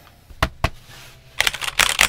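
Redragon K596 Vishnu TKL mechanical keyboard handled on the desk: two light knocks about half a second in, then a quick, louder burst of key clacks in the last half second as fingers come down on the keys.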